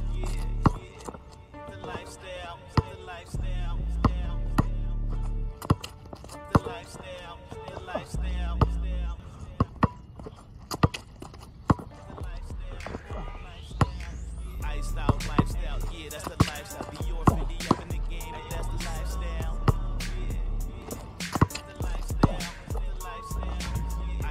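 Hip hop background music with long, heavy bass notes that stop and start and sharp percussive hits. A rising sweep comes in a little past halfway.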